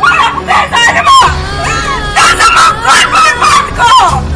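A woman wailing and crying out in distress in a string of short, broken cries over background film music.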